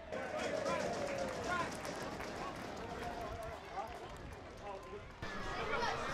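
Ambient sound of a football ground: scattered voices of players and spectators calling out, with no commentary. The sound changes abruptly about five seconds in, at an edit.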